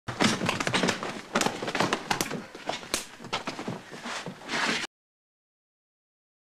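A rapid run of knocks and bumps with rustling of cloth and bedding, as in a scuffle on a bed. The sound cuts off abruptly about a second before the end.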